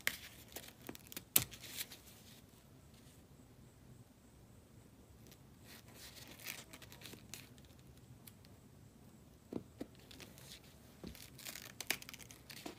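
Ankara cotton fabric rustling and crackling faintly as a hot soldering iron cuts through it and the cut-out pieces are pulled free. It comes as scattered short crackles, one sharp crackle about a second and a half in, and busier in the last few seconds.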